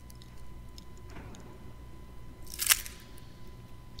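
Brief crunchy handling noise about two-thirds of the way in, with a few faint clicks, over a low steady electrical hum and a thin steady tone.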